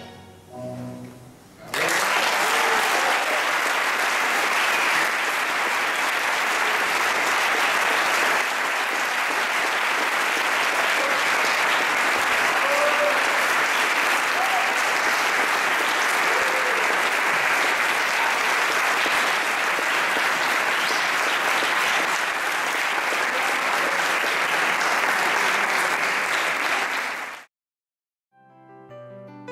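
Faint tango music dies away in the first two seconds, then an audience applauds steadily until the sound cuts off abruptly shortly before the end.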